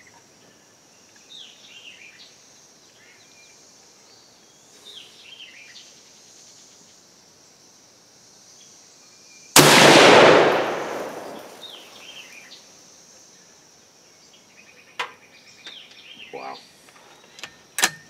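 A single .308 Winchester rifle shot from a scoped Savage Hog Hunter bolt-action, fired about halfway through, its echo dying away over about two seconds. Faint bird chirps come before and after it. Near the end there are a few sharp metallic clicks as the bolt is worked.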